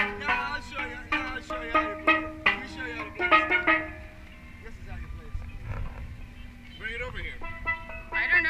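Steel pans struck with mallets: a quick run of ringing, pitched notes that thins out about halfway through, then starts again just before the end.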